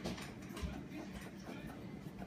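A fingernail scratching the coating off a scratch-off lottery ticket on a wooden table: a faint, rapid run of small scrapes.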